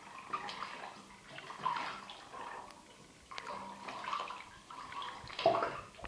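Water sloshing and splashing in a bathtub as a sneakered foot treads on shoes lying underwater, in irregular surges with the biggest splash near the end.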